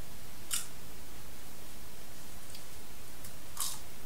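Popcorn being handled from a bowl and eaten: two brief crisp crunch-like sounds, about half a second in and near the end, with a few fainter ones between, over a steady low hiss.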